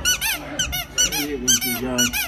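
Rubber squeaky dog toy squeezed over and over by hand. It gives loud, quick high-pitched squeaks, each rising and falling in pitch, about five or six a second.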